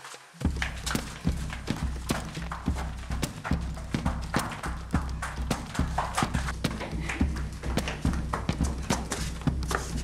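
A low, steady drone with a fast, uneven clatter of sharp knocks over it, starting about half a second in: soundtrack-like background audio.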